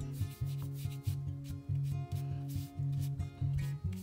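A paintbrush rubbing and scrubbing acrylic paint onto the edge of a stretched canvas in repeated strokes, over background music with a steady bass line.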